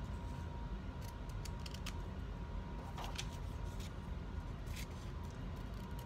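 Scissors cutting paper: about five separate, irregularly spaced snips, over a steady low hum.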